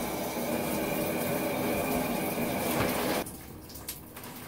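Shower running, a steady spray of water, shut off a little over three seconds in.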